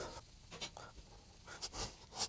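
Cloth rubbing along the maple fretboard and frets of an electric guitar, a few faint, short swishes.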